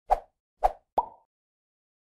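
Animated logo-intro sound effect: three quick pops within about a second, the last trailing off in a short steady tone.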